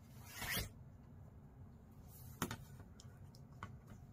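Faint handling sounds on a cutting mat: a short swish of a hand sliding over cotton fabric, then a clear acrylic quilting ruler set down with one sharp tap about two and a half seconds in, followed by a few faint ticks.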